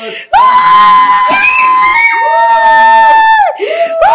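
High-pitched celebratory shrieks from a few people, long held cries one after another, with other voices underneath.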